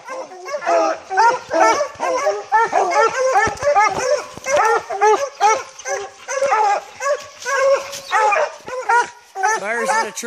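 Bear hounds barking treed at the base of the tree, a continuous run of loud, rapid barks, about three a second. Their barking signals a bear held up the tree.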